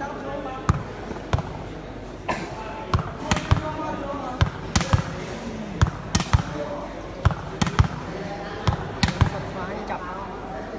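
Sharp slaps of a volleyball being struck and bouncing, about eighteen at irregular intervals, some in quick pairs, over a constant murmur of crowd voices in a hall.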